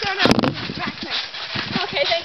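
People bouncing on a trampoline: repeated low thuds on the mat, with a sharp knock and rattle about a quarter second in, under girls' voices and laughter.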